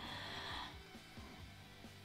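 A small child breathing in: a short, soft breath noise lasting under a second, then a faint low hum.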